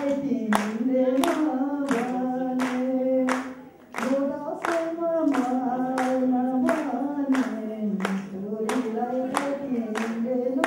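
A man singing unaccompanied into a microphone, holding long notes, with a short break for breath a little before the fourth second. Hands clap along in a steady beat of about two claps a second.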